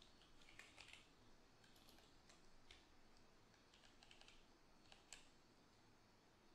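Faint typing on a computer keyboard: short keystroke clicks in small irregular clusters.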